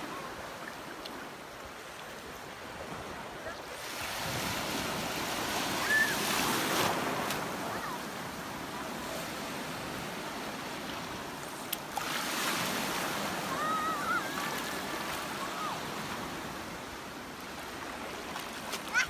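Small sea waves washing and breaking in shallow water at the shoreline, a steady surf that swells louder for a few seconds from about four seconds in.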